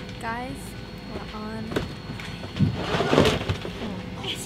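A woman speaking softly over a faint steady hum in an airliner cabin, with a short burst of noise about three seconds in.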